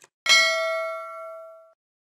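A short click, then about a quarter second in a single bell ding that rings on and fades out over about a second and a half: a subscribe-button and notification-bell sound effect.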